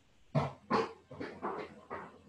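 A dog barking about five times in quick succession, the first two barks the loudest, heard over a video call's audio.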